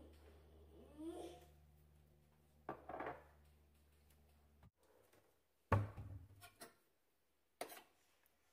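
Faint knocks and clinks of a metal serving spoon being lifted off a ceramic tile rest and brought to a stainless skillet. The loudest knock comes about three-quarters of the way through. A low steady hum underneath stops abruptly about halfway.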